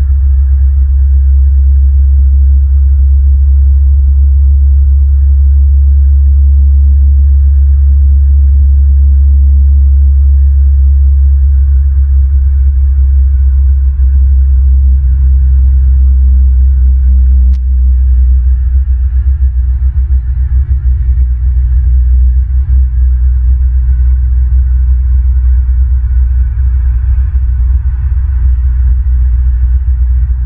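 Loud, steady low rumble picked up by the outdoor nest-cam microphone, with a single faint tick a little past halfway.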